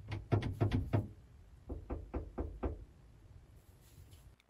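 A series of quick knocks on a camper van's body, heard from inside: a sharp run of about six in the first second, then a softer run of about six a second later.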